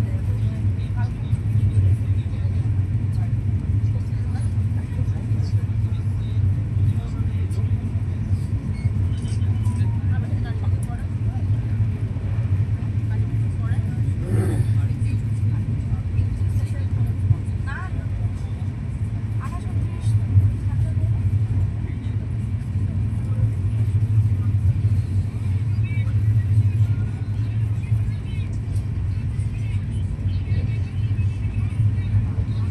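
Steady low rumble of an LHB passenger coach's wheels running on the track at speed, heard from inside the coach.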